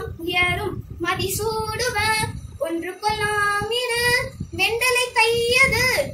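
A girl singing solo and unaccompanied, in phrases of long held notes that waver in pitch, with brief breaks between phrases.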